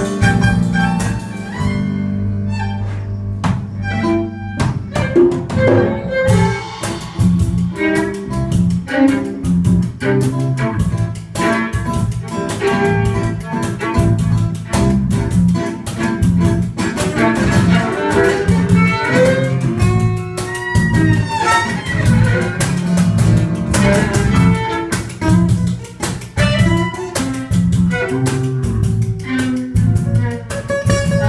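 Live band playing an instrumental passage: bowed violin over bass, drums and acoustic guitar, with sliding high notes in the middle.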